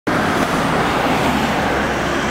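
Road traffic passing close by: a steady rush of tyres and engines.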